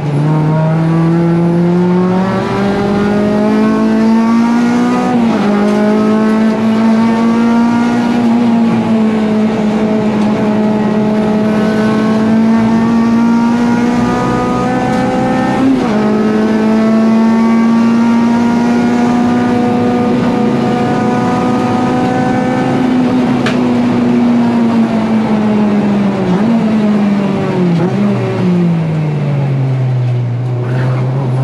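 Honda Civic EG race car engine at racing revs, heard from inside the cabin. The revs climb with a gear change about five seconds in and another around sixteen seconds, then hold high down a straight. Near the end the revs fall away under braking, with two quick downshift blips.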